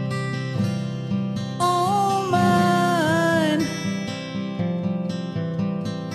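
Soft acoustic guitar accompaniment, strummed chords, with a wordless sung vocal line that enters about one and a half seconds in, glides and fades out a little past the middle.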